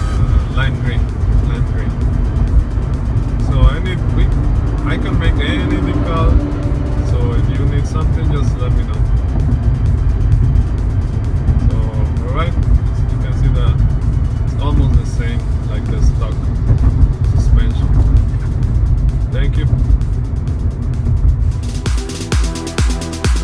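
Steady low road and engine rumble inside the cabin of a moving 2014 Toyota Corolla S, with music and a voice playing over it.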